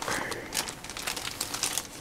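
Clear plastic bag around a wireless keyboard crinkling in irregular rustles and crackles as the keyboard is handled and lifted from its cardboard box.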